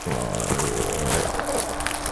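Plastic wrap crinkling as hands squeeze and press a deflated, shrink-wrapped basketball, with a faint steady tone underneath.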